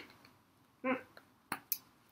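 Sharp plastic clicks from a wide-mouth plastic bottle's screw-top lid being handled, two of them close together about a second and a half in.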